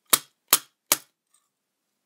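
Three sharp knocks close to the microphone, evenly spaced a little under half a second apart, in the first second.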